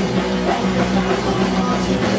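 Punk rock band playing live: a drum kit and electric guitars, loud and dense without a break.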